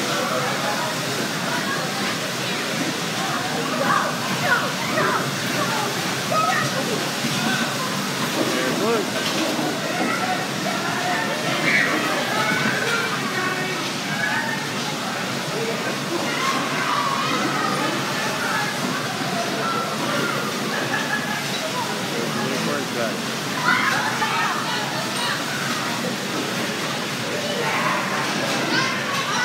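Electric bumper car ride in use: a steady noisy din of the cars running, with indistinct voices and shouts of the riders throughout.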